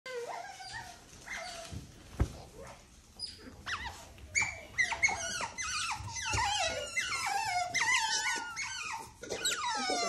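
Asian small-clawed otter calling with repeated high-pitched whines and squeaks, each falling in pitch, sparse at first and then coming thick and louder from about halfway. A single sharp knock about two seconds in.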